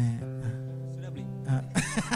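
A guitar chord strummed and left to ring, with a second strum about a second and a half in.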